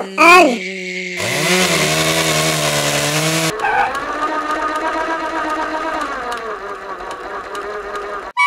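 A spinning Levitron magnetic top drops onto a wooden tabletop: about a second in it sets up a rasping whir that rises in pitch and then holds, the rasp stops suddenly after a couple of seconds, and the top spins on with a steady hum.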